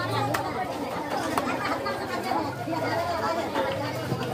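Background voices of several people talking over one another, with a steady low hum under them. Two sharp clicks come about a third of a second and about a second and a half in.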